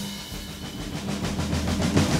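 Live jazz band playing, drums to the fore: a fast run of drum strokes that builds in loudness, over a low sustained bass note that comes in about a second in.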